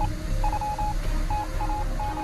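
Intro music: short electronic beeps at one steady pitch, in an uneven on-off pattern like a telegraph signal, over a low bass.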